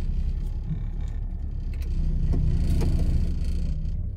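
Car engine idling while stopped, a steady low rumble heard from inside the cabin.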